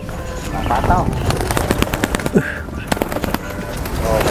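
Racing pigeon's wings clapping and flapping in a rapid, irregular clatter of sharp clicks as the bird comes in to the handler and is caught, with brief shouts from the men around.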